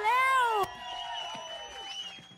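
A woman's voice through a stage microphone: one short, high cry that rises and then falls in pitch and cuts off suddenly about two-thirds of a second in. Faint steady high tones linger after it.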